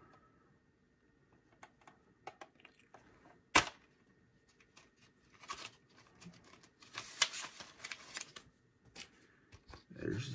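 Handling of a metal steelbook Blu-ray case: scattered light clicks, one sharp click about three and a half seconds in, then about a second of scraping and rustling near seven seconds in as the case is opened.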